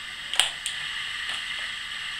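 One sharp plastic click about half a second in, then a fainter one, from a laptop keyboard and its connector's paper pull tab being handled, over a steady hiss.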